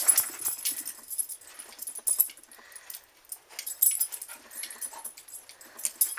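A small dog tussling with a plush toy bear on carpet: irregular scuffles and soft clicks, with dog sounds among them.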